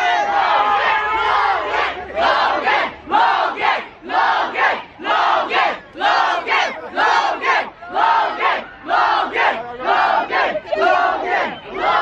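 A large crowd of excited young fans shouting. After a couple of seconds of continuous screaming they fall into chanting in unison, short shouts repeated in an even rhythm.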